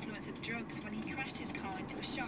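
A person's voice playing from a car radio, over the car's engine and road noise as it drives.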